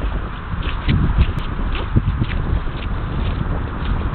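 Irregular footsteps squelching on wet, soggy grass, with wind rumbling on the microphone.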